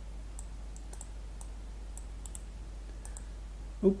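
Faint, irregularly spaced clicks of a computer mouse and keyboard over a low steady hum, as text is selected and pasted.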